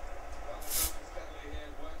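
Aerosol spray deodorant with a ring-shaped nozzle giving one short hiss of spray, a little under a second in.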